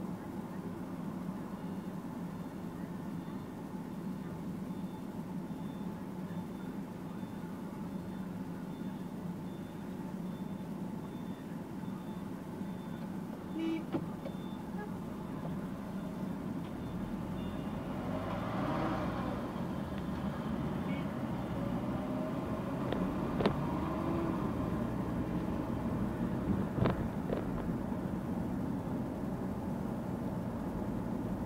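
Car engine and cabin noise heard from inside the car: a steady low hum while stopped in traffic, then growing fuller and a little louder from about halfway as the car pulls away and gathers speed. A few sharp clicks near the end.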